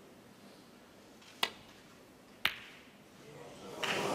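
Snooker break-off shot: the cue tip clicks against the cue ball, then about a second later the cue ball clicks into the pack of reds. Two sharp, single clicks in a quiet arena, with a murmur of voices rising near the end.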